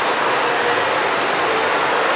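Steady, even rushing noise with no distinct events, such as air-handling or fan noise filling a large room.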